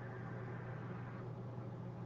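Quiet room tone: a steady low hum under a faint hiss, with no other event.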